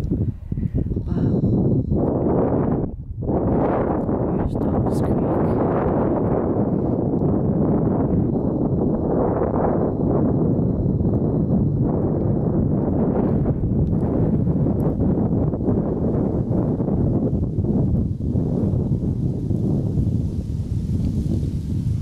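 Wind buffeting the microphone: a loud, gusty low rumble that rises and falls, with a brief lull about three seconds in.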